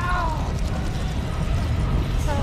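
A man crying out in anguish at the very start, his voice falling in pitch, over a dense, steady low rumble from a film soundtrack.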